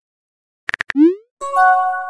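Chat-app sound effects: a few quick tapping clicks, then a short rising "bloop" pop about a second in, followed by a brief bright chime of several steady tones as a new message comes up.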